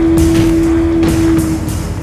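Trailer soundtrack: a single held note over a low rumble, the note fading out about one and a half seconds in.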